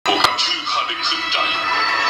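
Film soundtrack: background music under voices, with a sharp hit about a quarter second in.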